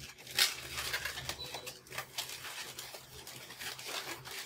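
Inflated latex twisting balloons rubbing and squeaking against each other and against the hands as they are bent and twisted into loops, in a string of short, irregular squeaks and scrapes.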